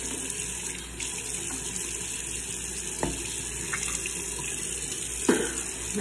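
A tap running steadily into a bathroom sink. There is a light knock about halfway through and a sharper, louder knock near the end.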